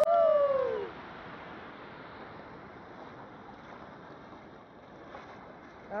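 A voice calls out once in a drawn-out, falling tone for about the first second, then a steady rush of river water spilling over a low concrete weir.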